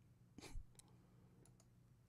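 Near silence with a soft click about half a second in and a few fainter clicks after it: a computer mouse clicking.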